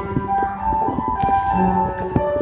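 Instrumental music: a simple melody of single notes stepping up and down over sustained lower notes, with a few faint sharp clicks.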